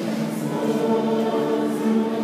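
Church choir singing, many voices holding long notes together.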